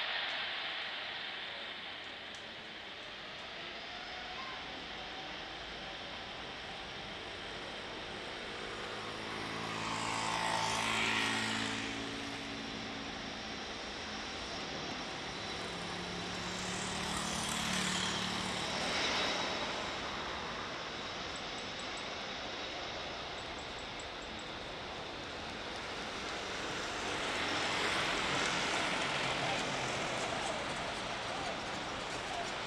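Jet engines of an Airbus A330 twin-jet airliner running loud as it rolls along the runway at speed, the jet noise swelling and easing a few times, loudest about eleven, eighteen and twenty-eight seconds in.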